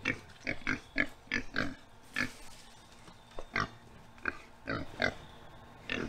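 Pigs grunting: a dozen or so short grunts at irregular spacing.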